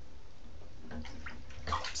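Steady hiss of water in a bathtub, even throughout, with a voice beginning to call a name near the end.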